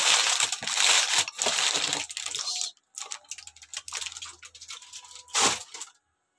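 Aluminium foil crinkling and crackling as it is pressed and crimped down over a dish, dense for about the first two seconds, then quieter scattered crackles, with one louder rustle near the end.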